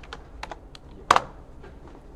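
Computer keyboard typing: a few light keystrokes, then one louder key press a little over a second in, as a terminal command is finished and entered.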